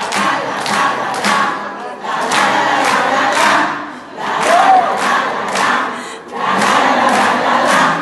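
Many voices singing together in phrases of about two seconds, with short breaks between, over a quick, steady beat of sharp strokes.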